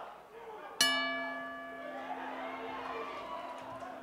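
Boxing ring bell struck once, about a second in, ringing on and slowly fading: the signal that starts the round. Crowd murmur underneath.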